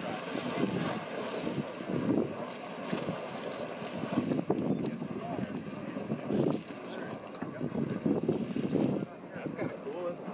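A small geyser erupting, its water splashing and gushing from the cone in irregular surges, with wind buffeting the microphone.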